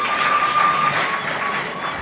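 Audience applauding, a steady even clatter of clapping, with a steady high ringing tone over it that is strongest in the first second and then fades.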